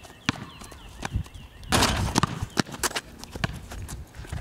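Basketball bouncing on asphalt as it is dribbled, mixed with sneaker footsteps: a string of irregular sharp knocks. A louder burst of rushing noise comes just before the halfway point.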